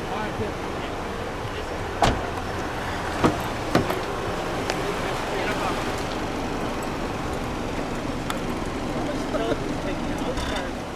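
Steady rumble of a car engine running, with three sharp knocks about two, three and a quarter, and nearly four seconds in.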